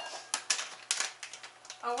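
A series of light, irregular clicks and taps from a measuring cup and utensils being handled at the counter while brown sugar is measured out.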